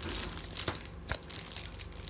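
A plastic-foil candy bar wrapper, the outer packaging of a Kinder Bueno, being pulled and torn open by hand: irregular crinkling with a couple of sharper snaps around the middle.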